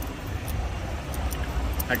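Low, steady rumble of idling semi-truck diesel engines, with a man's voice starting a word right at the end.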